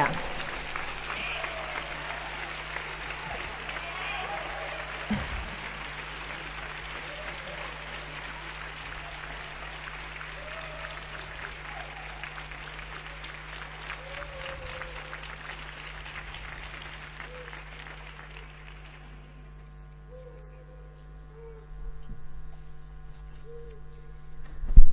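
Audience applauding steadily, then dying away about nineteen seconds in, over a steady low electrical hum.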